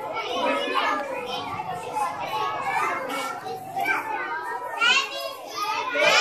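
A crowd of young children chattering at once, many overlapping voices.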